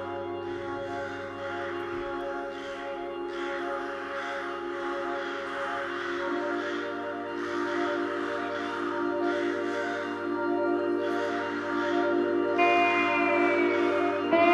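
Keyboard holding slow sustained chords with a gentle pulsing. The chord changes about six seconds in. Short harsh noisy bursts come and go over it, and a higher sliding note enters near the end.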